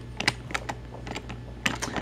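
Quick, irregular clicks and taps of a small diecast metal toy train being handled against plastic toy track and other toy trains, a dozen or so clicks with a busier cluster near the end.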